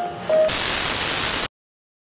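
The last notes of a music melody, then about a second of loud TV static hiss, a no-signal sound effect, that cuts off suddenly.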